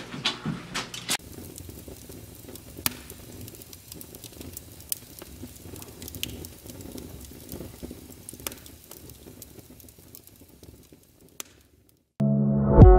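Wood fire crackling in a fireplace: a steady low crackle with occasional sharp pops, fading out near the end.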